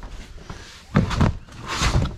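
Blue plastic storage tote full of video game cases being carried and set down: a knock about a second in, then a louder rattling bump near the end.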